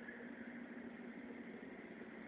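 Faint steady hiss with a low hum: the recording's background noise.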